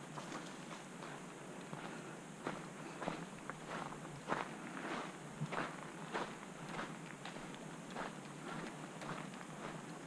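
Footsteps of a hiker walking on a dirt forest trail at a steady pace, about two steps a second, loudest around the middle.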